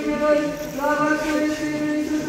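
Voices singing a slow chant over a steady held note, the melody rising and falling above it.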